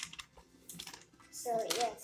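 Pages of a lined paper notebook being flipped by hand, a few short papery rustles.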